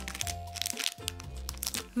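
Background music with a steady beat, over the crinkling and crackling of a foil blind-bag toy packet being handled and torn open.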